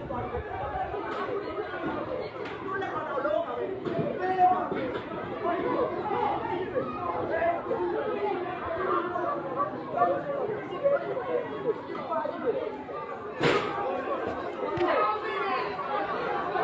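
A hubbub of several people talking over one another, with a single sharp bang about three-quarters of the way through.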